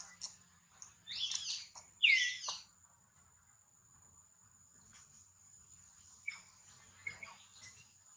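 A newborn long-tailed macaque giving two short high-pitched squeaks, about one and two seconds in, the second sliding down in pitch. A thin steady high whine runs underneath, with a few faint clicks later on.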